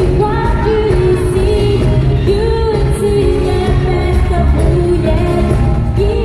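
Live pop music through a concert sound system: a woman singing lead into a microphone over a loud backing track with a heavy bass.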